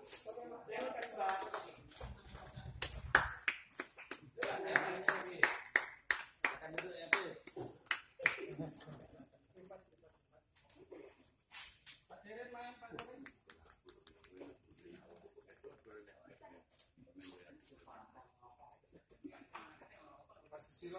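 Table tennis balls clicking irregularly as they bounce on the table and the concrete floor, in a small, echoing room, with men's voices talking in between.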